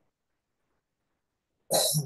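Near silence, then one short, sudden cough about a second and a half in.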